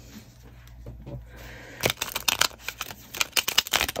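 A new mini tarot deck being riffle shuffled by hand: after a quiet start, the cards flick together in a fast run of clicks lasting about two seconds and stopping just before the end.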